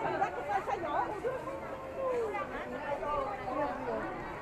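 Several people talking at once around a crowded market fish stall, with one voice drawing out a long syllable that falls in pitch about halfway through.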